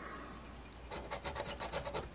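A scratch-off lottery ticket's coating being scraped away with a handheld scratcher disc. The scraping is faint at first, then becomes a quick run of short back-and-forth strokes from about halfway through.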